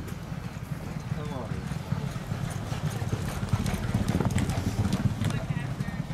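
Hoofbeats of two racehorses galloping on a dirt track: a rapid, dense drumming of hooves that grows a little louder past the middle as they go by.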